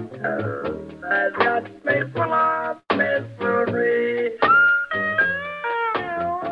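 Pedal steel guitar playing a picked country melody through a talk-box tube held in the player's mouth, with clearly separate notes and sliding pitch changes in the second half.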